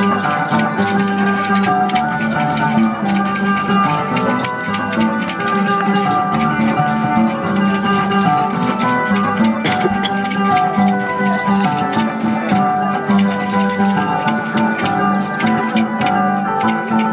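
Andean folk dance music with plucked strings, playing steadily with long held melody notes.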